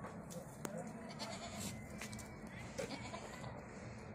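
Goats bleating faintly a few times over a steady low background noise, with scattered light clicks.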